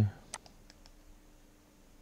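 Computer mouse button clicks: one sharp click about a third of a second in, then a few fainter ticks.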